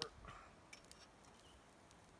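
Mostly near silence, broken by a few faint clicks of metal tongs on a rocket-stove grill as a steak is lifted and turned. The sharpest click comes right at the start, and a few softer ones follow about a second in.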